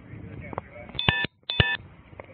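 Two short electronic beeps, each about a quarter second long and about half a second apart, each made of several steady pitches sounding together. They are the loudest thing here.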